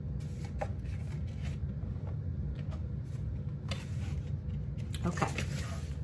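A paper greeting card being handled: a few brief, scattered rustles and crackles of the card stock, over a steady low hum.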